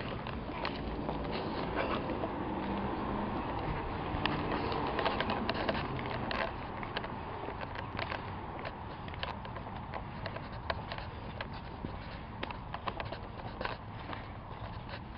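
Footsteps and scattered light clicks and scuffs on asphalt over a steady outdoor background, as someone walks along a stretched tape measure.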